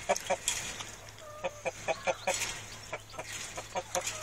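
Chickens clucking in a run of short clucks, several a second, with one short drawn-out note about a second in.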